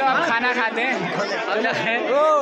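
Several people talking at once in a close crowd: overlapping speech and chatter.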